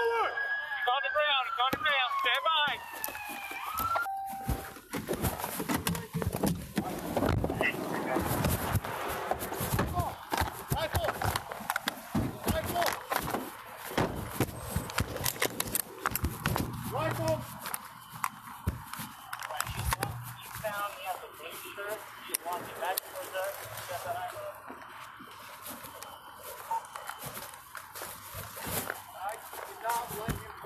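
A police siren wails, then switches to a fast yelp for the first few seconds and fades out. For the rest, a body-worn camera is jostled against clothing and gear, a continuous clatter of rubbing, knocks and rustling, with muffled voices under it.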